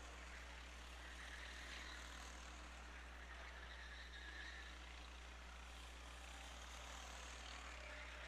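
Faint, steady sound of racing-kart engines running on the circuit, heard low in the background over a constant low hum.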